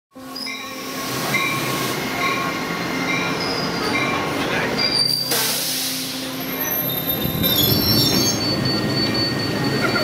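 Double-deck commuter train rolling into a station platform and coming to a stop, its wheels squealing in several high, held pitches. A short burst of hiss comes about five seconds in.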